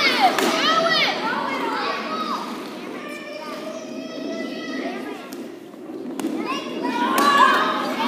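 Group of children shouting and calling out during a game in a gymnasium hall, loudest in the first second and again near the end, with a few thuds in the quieter middle.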